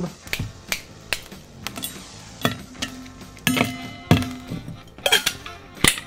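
Ice cubes dropped into a stainless steel cocktail shaker tin, then the tins handled and fitted together: a series of sharp clinks and knocks of ice and metal, some ringing briefly.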